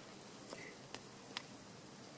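Quiet campfire crackling faintly: a few soft, separate pops over a low hiss.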